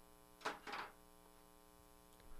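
Two short sudden sounds close together about half a second in, a sharp click and then a brief scrape, over a faint steady electrical hum.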